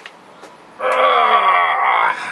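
A long, strained vocal groan from a person lifting a child off the ground, starting a little under a second in and sliding slightly down in pitch.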